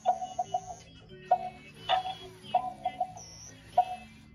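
An electronic dancing giraffe plush toy playing its built-in electronic tune, a melody of short, sharp notes over a repeating beat, while it twists and dances.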